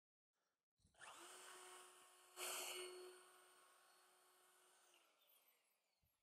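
Router with an eighth-inch bearing-guided round-over bit starting up and running steadily, faint in the recording. It is louder for about a second near the middle while it cuts the round-over on the edge of an end-grain cherry cutting board. It is then switched off and winds down, its pitch falling.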